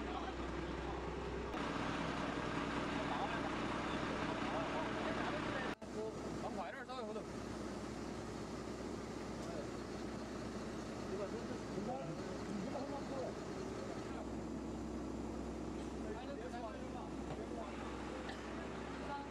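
Heavy truck engine idling steadily under indistinct voices, with a brief break in the sound about six seconds in.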